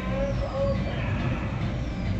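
Automated roulette wheel spinning under its glass dome, the ball running around the track with a steady low rolling rumble, over casino background noise.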